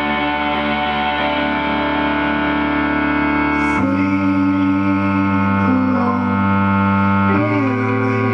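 Sustained keyboard chords from a Roland synthesizer, held as a steady drone that shifts to a new chord about four seconds in and again near the end.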